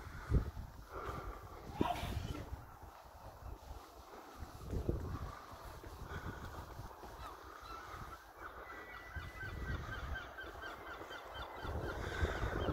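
Birds calling: a fast series of short, repeated calls, about four a second, through the second half.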